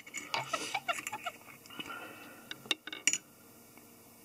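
A few sharp small clicks from fine fly-tying scissors being handled at the vise, the loudest two close together about three seconds in.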